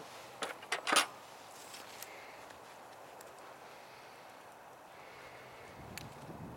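A few sharp knocks and clicks of handling at the rocket stove in the first second, the loudest about a second in, then only a faint steady hiss.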